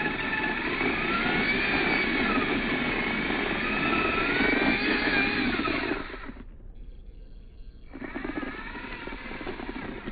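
Mini RC crawler's brushed motor and geared drivetrain whining. The pitch rises and falls with the throttle as it climbs rock on 3S power. The whine cuts out about six seconds in and returns, quieter, a second and a half later.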